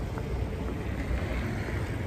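City street noise at night, traffic mixed with a low rumble of wind on the phone's microphone, one continuous noise with no distinct events.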